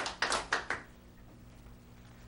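A few last handclaps die away within the first second. After that there is only the quiet hum of a large room with a steady low electrical drone.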